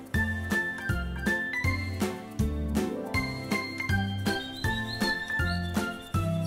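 Background music: a light tune of short ringing notes over a moving bass line, with a quick, steady beat.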